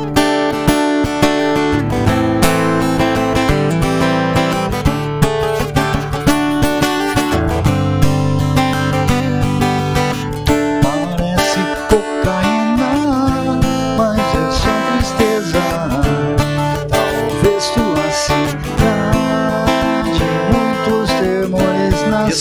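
Steel-string acoustic guitar strummed in a steady rhythm as a song's intro, with a man's voice starting to sing along about halfway through.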